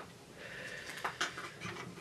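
Faint handling sounds of objects being moved about in a cardboard box, with a few small clicks and knocks, and a soft sniff about half a second in.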